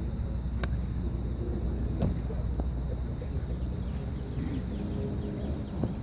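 Golf club striking a ball: one sharp crack a little over half a second in, then a second similar strike about two seconds in, over steady wind and background murmur.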